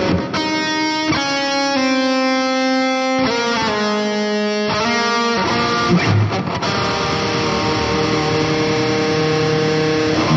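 Starcaster Strat-style electric guitar played through a Boss IR-200 amp and cabinet simulator. It plays a melodic line of clear single notes, each held half a second to a second, then busier, denser playing from about five seconds in, ending on a sustained note.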